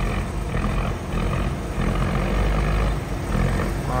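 A boat's diesel engine running hard at high throttle, a loud, steady low rumble, as the grounded vessel tries to work itself free of the shoal.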